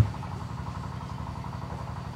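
A steady low hum, with a brief click right at the start.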